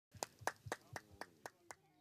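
Faint, evenly spaced clicks, about four a second, each with a small low thump: a rhythmic count-in just before a song begins.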